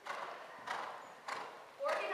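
Hoofbeats of a cantering horse on indoor-arena footing: three dull strikes about two thirds of a second apart, as it goes over a pole fence.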